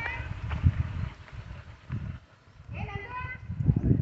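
Wind gusting and rumbling on the microphone. A high-pitched voice calls out briefly at the start and again about three seconds in.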